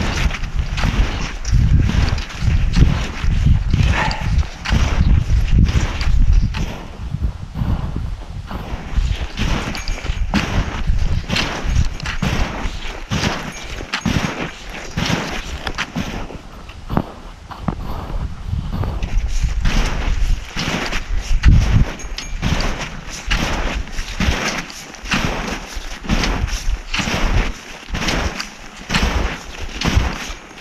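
Footsteps and trekking-pole plants in deep, compact snow, in a steady rhythm of about two a second. Wind rumbles on the microphone in the first few seconds and again about two-thirds of the way through.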